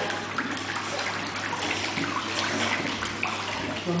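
Water splashing and sloshing in a hydrotherapy pool as a dog paddles, held up by a person wading beside it, over a steady low hum.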